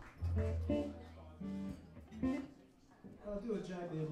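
Electric guitar played quietly, a few single notes and short chords picked rather than a full song, with a low note ringing underneath early on and again near the end.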